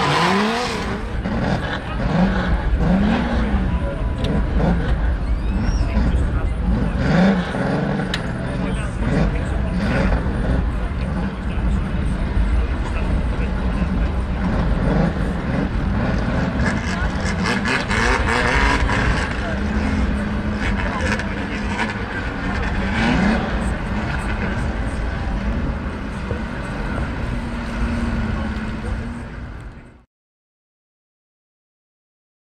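Stock car engines running on a racing oval, revving up and down repeatedly in the first several seconds, with voices mixed in throughout; the sound fades out at the very end.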